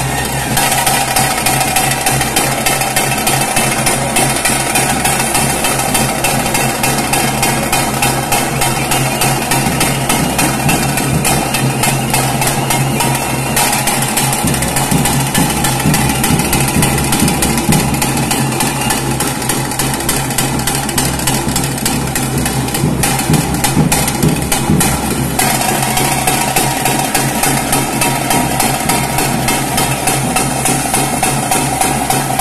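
Loud temple ritual music: fast, unbroken drumming with a steady held tone over it.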